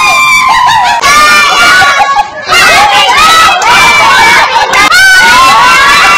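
A group of people shouting and cheering excitedly, with many overlapping high-pitched, drawn-out shrieks of delight. There is a short break a little after two seconds, then it picks up again.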